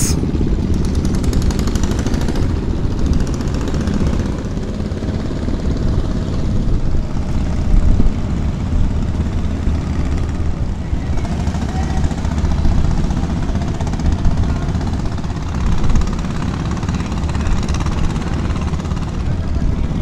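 Wind buffeting the microphone as a loud, uneven low rumble, with the drone of river boat engines beneath it.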